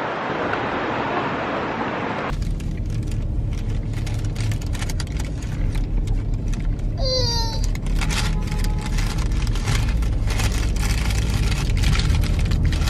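Street noise for about two seconds, then a cut to a steady low rumble inside a car's cabin, with small scattered clicks. A brief high chirp falling in pitch comes about seven seconds in.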